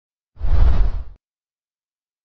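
Whoosh sound effect of an animated logo intro, heavy in the bass, lasting under a second and cutting off abruptly.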